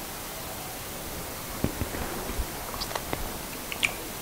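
Small clicks and crackles of fingers picking at a piece of pan-fried trout head, over a steady background hiss. The clicks start about a second and a half in and come more often near the end.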